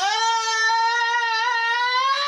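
A cartoon child's voice holding one long, high sung note, rising slightly in pitch.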